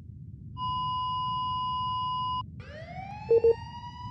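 A steady electronic beep tone held for about two seconds that cuts off abruptly, then a siren winding up, its pitch rising and levelling off, with two short low beeps over it near the end.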